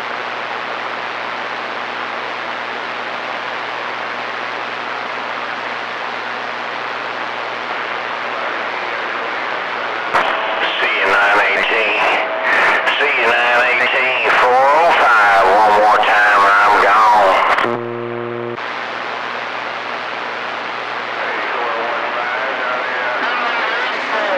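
CB radio receiver hissing with static and a low hum between transmissions. About ten seconds in, a garbled, hard-to-follow voice breaks through the noise for some seven seconds. It ends in a short buzzing tone, and then the static returns.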